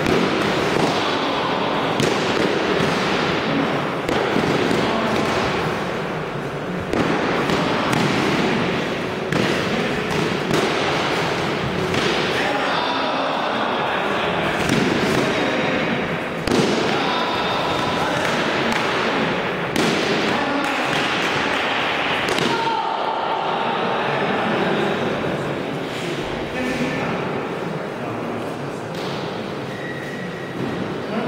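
Eskrima sticks striking padded armour and helmets in full-contact stick sparring: irregular thuds and cracks every second or few, with voices around the mat.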